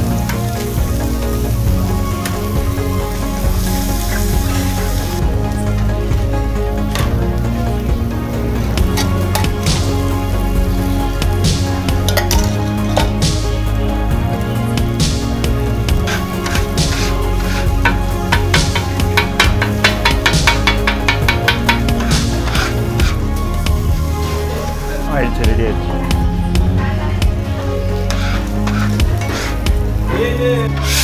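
Background music over egg frying on a flat iron griddle, with a metal spatula striking and scraping the griddle as it chops the egg, the strikes coming quick and regular around two-thirds of the way in.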